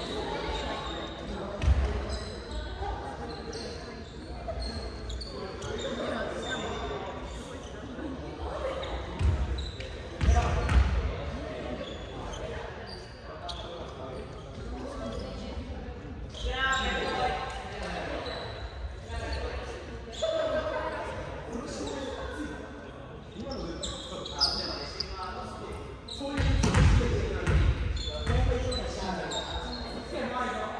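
Echoing gymnasium sounds of a volleyball practice match: players' scattered voices and calls, with several sharp thuds of the ball being struck or bouncing on the wooden floor, the loudest a few seconds in, around ten seconds in and near the end.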